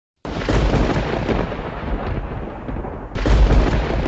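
Loud, low rumble with a noisy hiss over it, from a film soundtrack played on a screen and picked up by the camera. It starts abruptly just after the beginning, eases off about halfway through and surges again about three seconds in.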